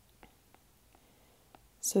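A few faint, scattered ticks of a stylus tapping on a tablet while numbers are written. A voice starts speaking near the end.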